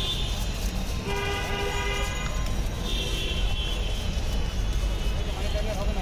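Street traffic rumbling steadily, with a vehicle horn sounding once for about a second, about a second in.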